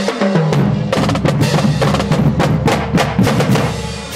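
Marching drumline playing: snare drums, tenor drums and bass drums in a fast, dense pattern of sharp strokes, thinning out near the end.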